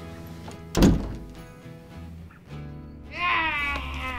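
Soft background score with a door shutting in a single loud thunk about a second in. Near the end a high, wavering voice starts up over the music.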